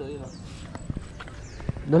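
Footsteps in flip-flops on a dirt bank: a few light, scattered slaps and clicks, with a brief murmur of voices at the start.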